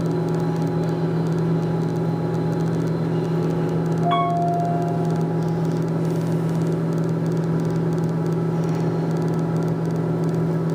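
Otis Series 1 elevator car travelling down one floor, a steady low hum throughout. About four seconds in, a single short chime sounds as the car reaches the lower level.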